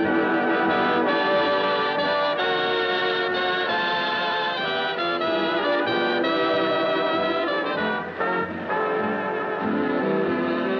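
Big-band swing orchestra playing, its brass section holding full chords, in a 1940 live radio broadcast recording; the band eases off for a moment about eight seconds in.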